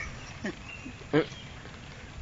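A toddler's short vocal sounds: two brief squeals or grunts, the second, just past a second in, louder than the first.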